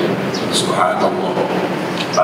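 A man's voice through a handheld microphone and PA, echoing in a large hall, over a steady rushing noise.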